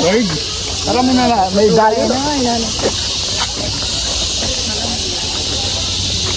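People talking for the first few seconds, then a steady high hiss.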